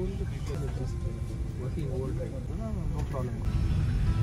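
Indistinct voices of people talking in an airliner cabin, over the cabin's steady low rumble.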